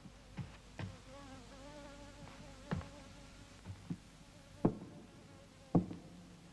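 Slow footsteps on a wooden floor, a sharp knock roughly every second, under a faint wavering buzz like a fly.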